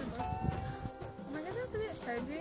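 People's voices talking or vocalising without clear words, with a steady high-pitched tone lasting about a second near the start.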